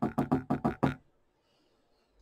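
A paintbrush clinking against a paint palette while picking up green paint: about eight quick, short ringing taps in the first second.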